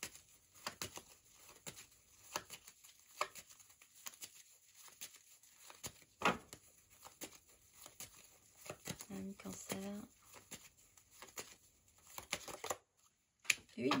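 Tarot cards being shuffled and handled: soft, irregular clicks and rustles of card stock, with one card drawn and laid down near the end.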